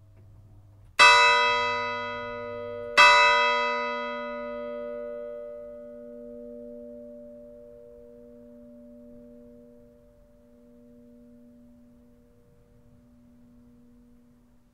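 A 1947 Jacobus van Bergen church bell tuned to b1, struck twice two seconds apart, each stroke ringing on and dying away slowly, its low hum lingering longest.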